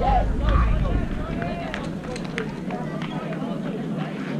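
Overlapping voices of spectators and players calling and chattering around a youth baseball field, with a low rumble during the first second and a few faint clicks near the middle.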